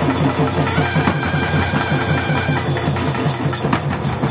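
Tamil folk drums played in a fast, even roll of low strokes, several a second, with a faint held high tone from a wind instrument above.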